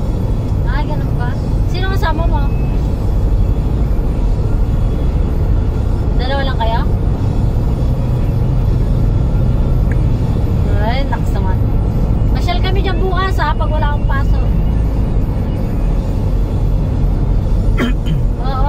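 Steady low drone of road and engine noise heard inside a moving car's cabin, with a voice breaking in briefly a few times.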